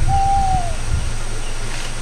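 A single hoot, held for about half a second and dropping in pitch at the end, over a steady low hum.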